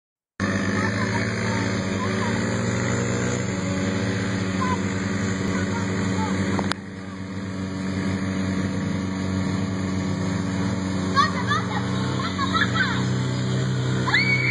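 Small ATV engine running steadily. Its sound drops abruptly about halfway through, then builds again. Short high-pitched voices call out near the end.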